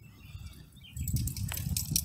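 Low rumble with a few light clicks on a phone's microphone, starting about a second in, as the phone is swung round from the ground.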